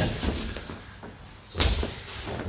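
A single dull thud of a person landing on a martial-arts training mat about one and a half seconds in.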